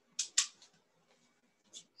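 Clicking on a computer to change slides: two sharp clicks about a fifth of a second apart, then a fainter click near the end.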